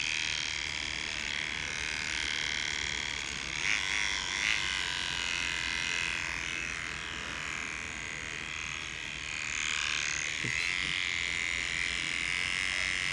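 Battery-powered hair trimmer buzzing steadily as it cuts a line-up along the hairline at the side of the head.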